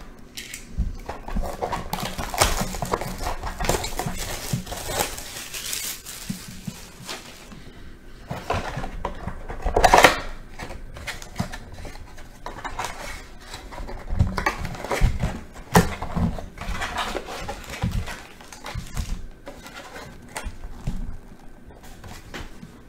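Hands unwrapping and opening a cardboard trading-card box: plastic wrap crinkling and cardboard rustling, then foil card packs rustling as they are taken out and set down. The rustling is irregular, loudest about halfway through.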